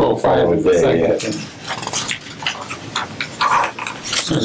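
Speech: voices talking at a meeting table, low and partly overlapping, with papers being handled and turned.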